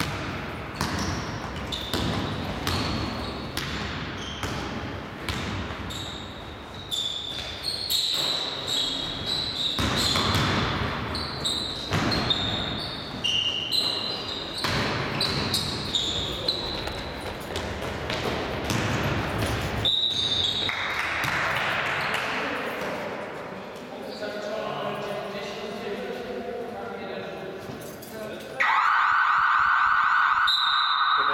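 Basketball game play in a large echoing sports hall: the ball bouncing repeatedly on the court, sneakers squeaking on the floor, and players calling out. Near the end a loud steady tone sets in abruptly.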